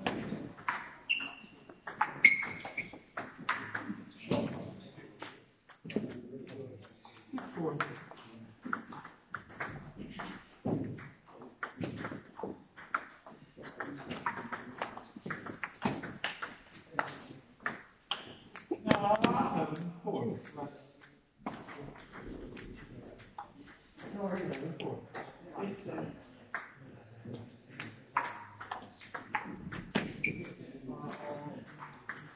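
Celluloid-type plastic table tennis ball clicking sharply off bats and the table in rallies, a quick irregular run of ticks throughout, with more rallies clicking at neighbouring tables in the hall.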